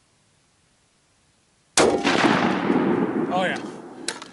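Near silence, then about two seconds in a single AR-15 rifle shot, very loud and sudden, with a long fading tail. It is fired with the shooter bearing down on the rifle to test the adjustable gas block's setting, and the action gets enough gas to cycle.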